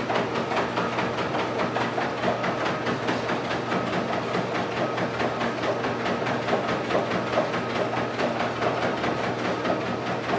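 Spirit Fitness treadmill running steadily: a motor hum and belt hiss, with a fast, even patter from a small dog's paws trotting on the moving belt.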